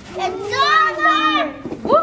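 Children's high-pitched voices calling out without clear words, one long rising-and-falling call starting just after the start and another starting near the end.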